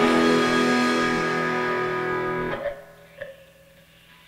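Electric guitar's last chord of a song ringing out and slowly fading, then cut off about two-thirds of the way in, followed by a couple of faint clicks and a low tail as the track ends.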